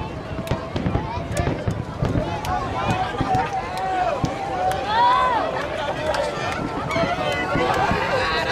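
Fireworks display bursting: many sharp bangs and low thuds in quick succession. Spectators' voices talk and call out over them.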